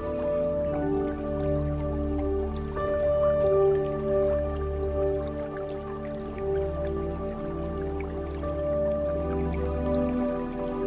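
Slow ambient new-age music: soft held tones that overlap and change slowly over a low steady drone, with water drips layered through it.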